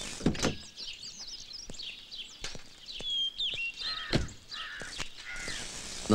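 Outdoor birdsong: many short chirps and whistles, with a few harsh caws in the middle. A single sharp thump comes about four seconds in.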